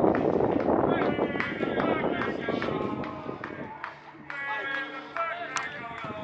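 Indistinct voices of footballers and staff talking and calling out on the pitch. A dense outdoor rumble fills the first few seconds, then fades.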